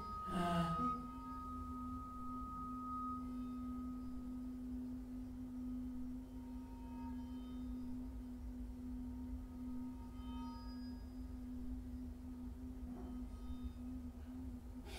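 Improvised experimental music for voice and electronics: after a short vocal burst at the start, one long, steady pure tone is held at a low-middle pitch. A higher tone fades out after about three seconds, and faint high tones flicker in and out around the middle.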